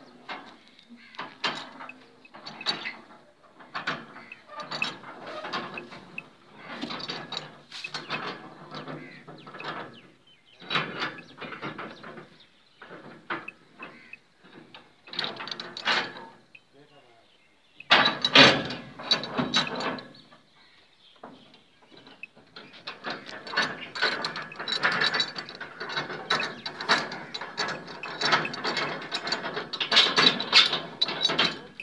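Irregular metallic rattling and knocking from a pickup truck's steel-barred livestock cage and tailgate with cattle standing inside, with a louder burst of clatter about two-thirds of the way through and denser rattling near the end.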